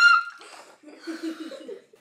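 Speech: a drawn-out spoken word ends just after the start, followed by faint, indistinct voices.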